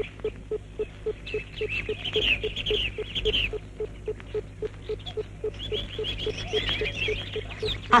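A steady low tick repeating about four times a second, with two spells of rapid, high-pitched chirping over a low steady hum.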